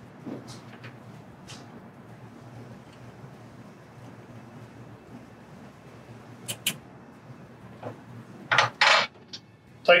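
Small metallic clicks of a hand wrench and steel bolts being worked as the actuator's mounting bolts are run in, over quiet room tone; two sharp clicks come about six and a half seconds in, followed by two louder noisy bursts near the end.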